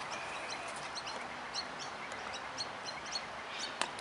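Small birds chirping repeatedly over a low outdoor background. Near the end there is a single sharp knock: the cricket ball coming off the inside edge of the bat.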